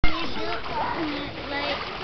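Children's and an adult's voices over water splashing in a swimming pool, with a sharp knock right at the start.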